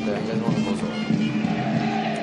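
Stadium cheering music with many voices singing and chanting along, steady and fairly loud throughout.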